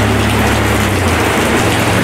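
Steady hiss of heavy rain with a constant low rumble underneath.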